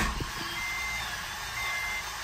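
Starter cranking the Acura RSX's 2.0-litre four-cylinder engine with its spark plugs out for a compression test, a steady whir, while a dashboard warning chime beeps about once a second.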